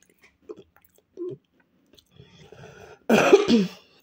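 A woman coughs once, short and harsh, about three seconds in. Before it come a few faint mouth sounds as she chews.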